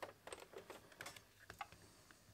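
Faint, irregular light clicks and taps, about seven or eight in two seconds, from fingers handling an Xbox One power brick's metal plate and small plastic parts.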